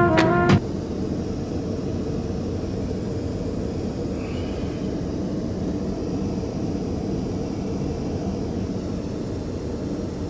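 Airliner cabin noise in flight: a steady, even low rumble and hiss with no rhythm or change. A music track cuts off about half a second in.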